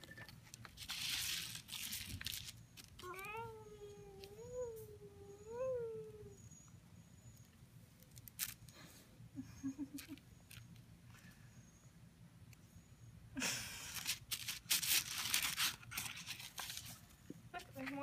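A toddler's wordless vocalizing: a few drawn-out sung sounds that rise and fall in pitch a few seconds in. Around them, bursts of scratchy rustling as hands smear finger paint across construction paper.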